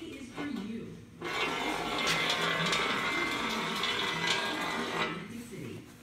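Small rare-earth hard-drive magnet sliding down an inclined aluminum plate, a steady scraping rub that starts about a second in and lasts about four seconds. Eddy currents induced in the aluminum slow its slide.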